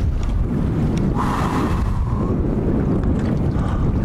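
Wind buffeting the microphone, a steady low rumble over choppy lake water, with a short hiss about a second in that lasts about a second.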